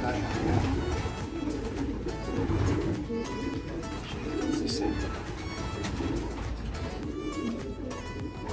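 Racing pigeons cooing in a loft: repeated low coos, one every second or so.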